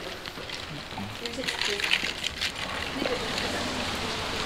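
Rain falling on wet pavement, growing a little louder about a second in, with indistinct voices in the background.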